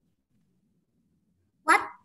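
Near silence, then about a second and a half in a child's voice says a short, loud "What".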